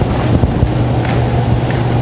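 A steady low rumbling noise with a constant low hum underneath and a hiss above it, even in level throughout.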